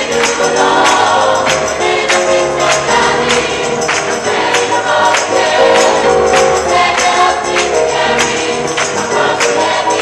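A 1980s pop song playing: a choir of voices singing over a steady beat with tambourine.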